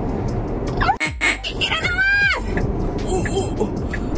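Steady road and tyre noise inside the cabin of a moving electric car, cutting out for an instant about a second in. Around the middle, a woman's voice makes one drawn-out, high vocal sound that rises and then falls.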